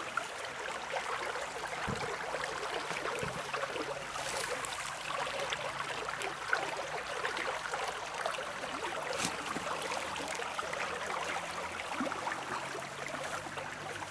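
Water running steadily in a small stream or irrigation channel, with a few light clicks and brushes on top.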